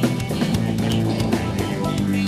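Live rock band playing an instrumental passage: electric guitar over a drum kit, with steady drum hits.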